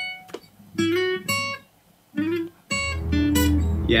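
Acoustic guitar playing a short lead solo of single picked notes, sliding up into a note twice, with brief pauses between phrases and longer held notes near the end.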